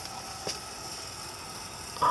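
Steady background noise with a faint, steady high-pitched tone, and one light click about a quarter of the way in.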